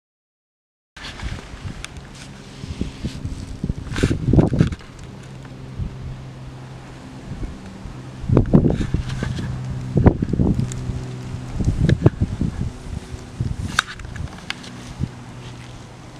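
Outdoor field sound after a moment of silence: a steady low hum with several loud rustling bumps on the microphone.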